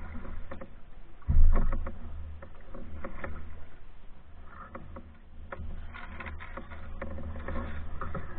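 A canoe being paddled: irregular paddle splashes and drips, with knocks and low rumble carried through the hull to the bow, and one loud thump a little over a second in.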